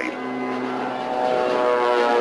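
Spitfire fighter's piston engine running with a steady propeller drone, growing louder about a second in.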